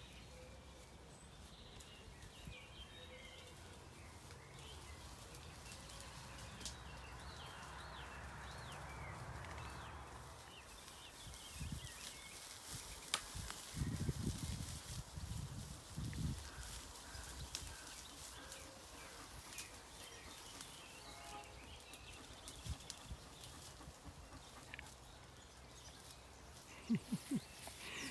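Zwartbles sheep and lambs grazing close by: irregular crisp clicks of leaves and stems being torn and chewed, mostly in the second half, with a couple of low rumbles about halfway through.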